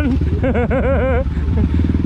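Trail motorcycle engine running steadily under way on a dirt track, with a person's voice over it for under a second near the middle.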